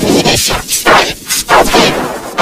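Cartoon audio mangled by heavy distortion and pitch effects: a character's shout is turned into a string of loud, harsh noise bursts, about three a second.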